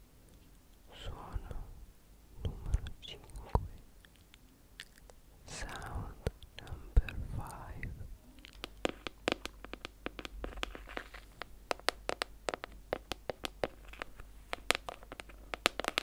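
Close-miked sounds of an unidentified object being handled: a few short rustling or scraping passes, then many quick, sharp taps or clicks from about halfway through.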